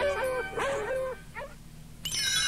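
Dogs yelping and howling: two calls of about half a second each, then a short faint one, dying away about a second and a half in.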